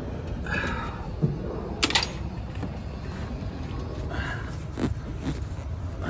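Handling noise: two short, sharp clicks and light rustling over a steady low rumble, as hands work a fitting onto copper tubing.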